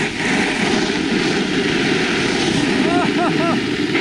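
Steady rush of wind on the microphone mixed with a snowboard sliding over groomed snow while riding, with a short laugh near the end.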